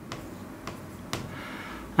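Marker pen writing on a whiteboard: a few light taps and strokes.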